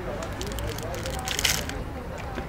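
Crinkling and tearing of a chocolate-bar wrapper, loudest in one short crackly burst about one and a half seconds in, with small crackles around it.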